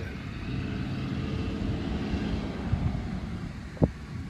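Light propeller airplane's engine running steadily as it flies low, with outdoor wind noise; a single sharp knock sounds near the end.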